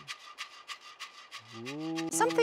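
A rattle shaken in a steady quick rhythm, about five strikes a second, under a faint high ringing tone. A deep held chanted note stops right at the start, and another begins near the end, sliding up in pitch.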